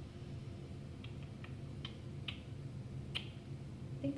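A handful of faint, sharp light clicks, about five, scattered over a low steady hum.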